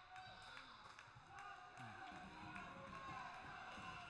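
Quiet gymnasium background between volleyball points: faint, distant voices and chatter from players and spectators, with a few light knocks.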